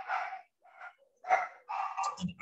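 A dog barking repeatedly, about four short barks in quick succession, heard in the background through a video-call microphone.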